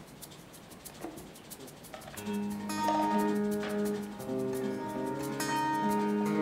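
Faint clicks for about two seconds, then an acoustic guitar and an upright bass begin a slow song intro, with low bass notes held under ringing plucked guitar notes.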